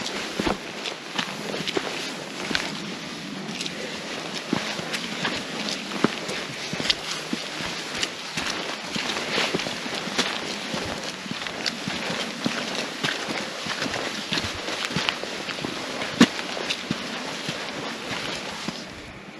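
Footsteps of a hiker walking up a dirt and gravel mountain trail: an irregular series of scuffs and crunches.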